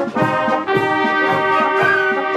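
Wind band playing live: flutes and clarinets over trumpets, trombones and low brass, with a steady pulse of short low notes underneath.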